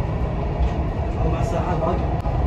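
Dubai Metro train running, a steady low rumble heard from inside the carriage, with faint voices over it.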